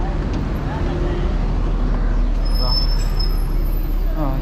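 Steady low rumble of motor traffic, with people's voices in the background and a thin high whine that comes in about halfway through.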